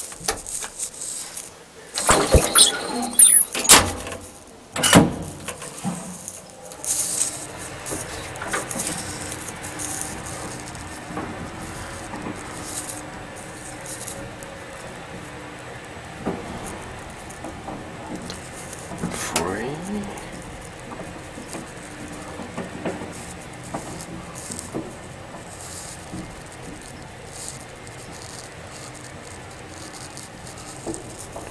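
Sharp clatter and a short high squeal in the first few seconds, then the steady running hum of an ASEA elevator modernised by Schindler as the car travels between floors, with a brief rising whine about two thirds of the way through.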